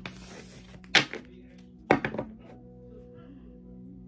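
Tarot cards handled on a table: a brief rustle, then two sharp knocks about a second apart. Quiet background music with steady tones comes in after the second knock.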